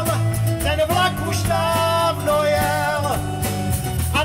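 Live band playing a song: a male voice singing held notes over strummed acoustic guitars, electric bass guitar and a drum kit.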